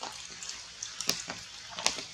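Rain falling through forest foliage: a steady hiss with scattered sharp drips and taps on the leaves, the strongest about a second in and near the end.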